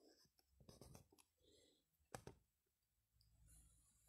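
Near silence in a small room, with a few faint clicks and soft rustles; one sharper click about two seconds in.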